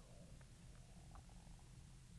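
Near silence: faint room tone with a low, steady rumble.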